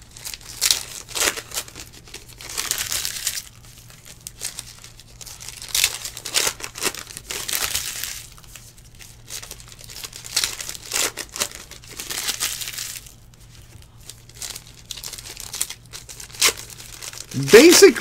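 Foil wrappers of Panini Diamond Kings trading-card packs crinkling and tearing as the packs are ripped open by hand, in a run of irregular bursts.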